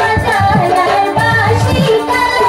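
A woman singing a Bhawaiya folk song into a microphone, her voice over an instrumental accompaniment with a steady drum beat.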